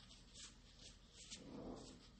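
Near silence: faint room tone with a few soft, brief scratching sounds.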